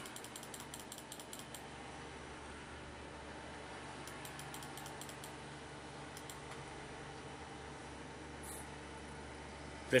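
Desktop computer hum, steady and low, while the computer is slow to boot. Faint rapid clicking comes in two short spells, in the first second or so and again about four seconds in.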